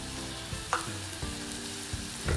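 Onion, garlic and sweet corn sizzling steadily in melted butter in a saucepan, with flour just added to start a roux. A single light click about two-thirds of a second in.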